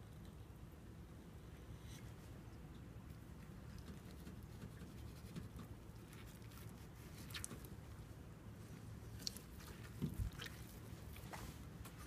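Faint wet slicing and handling sounds of a fillet knife working along a sockeye salmon fillet, with a few scattered soft clicks and taps over a low steady hum.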